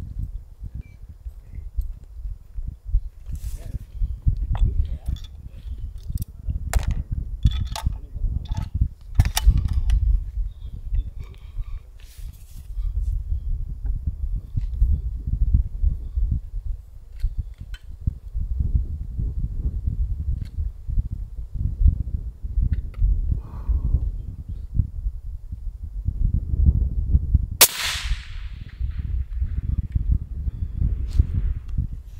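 A single shot from a suppressed Remington 700 rifle in .300 Win Mag near the end, a sharp crack trailing off in a short echo. Before it there are a few faint clicks over a steady low rumble.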